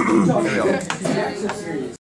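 Young men's voices talking in a small room, cut off suddenly at the end.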